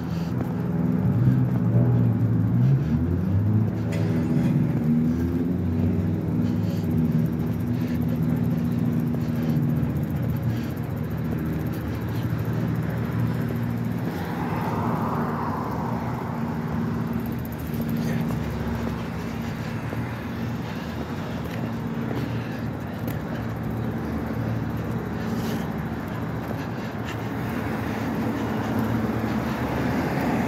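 Street traffic. For about the first ten seconds a vehicle engine runs close by, its pitch gliding up and down, then it gives way to the steady noise of passing cars.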